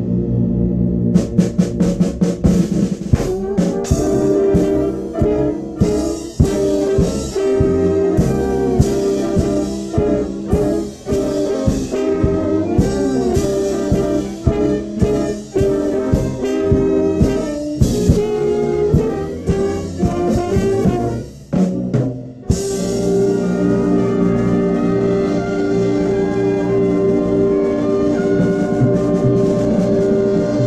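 Concert band with brass, French horns and drum kit playing a rhythmic, jazz-flavoured passage punctuated by frequent drum hits. After a brief break about three-quarters of the way through, the band holds one long sustained chord.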